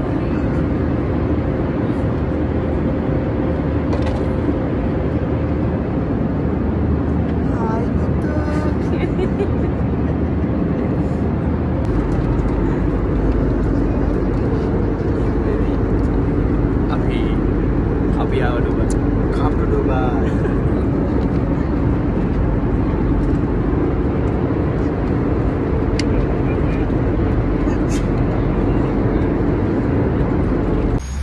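Airliner cabin noise: a steady drone of engines and rushing air with a constant hum, growing a little deeper and louder about twelve seconds in. Faint passenger voices come through now and then.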